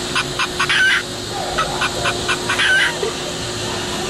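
A plush toy chicken's sound box plays recorded clucking: two runs of quick clucks, each ending in a short rising squawk.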